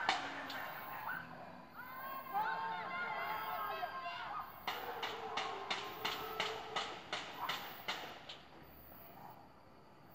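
Pots and pans being banged in a panelaço protest: a run of sharp, distant metallic clangs at about three a second, with people shouting from the buildings before the clangs. The sound fades away near the end.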